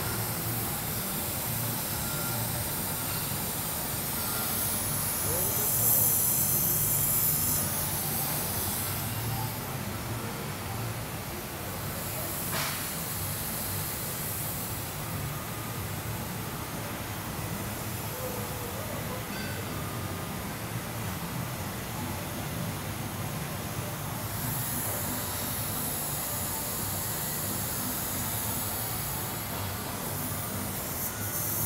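Steady low machine rumble from a shaft-straightening rig, with a few stretches of high hissing lasting several seconds each and a sharp click about twelve seconds in.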